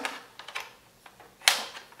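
Power cord being pulled from the cord-storage channel under the Scotch Pro thermal laminator, rattling against the plastic housing: a few light clicks, then a sharp plastic clack about one and a half seconds in.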